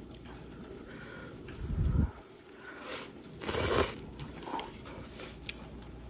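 Close-miked mouth sounds of a person chewing and biting food, with small wet clicks. There is a low bump about two seconds in and a louder crunchy burst around three and a half seconds in.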